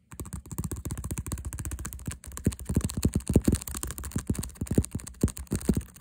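Fingertips and nails tapping fast on a stiff leather-look bag, close to the microphone: a dense run of many taps a second that starts suddenly.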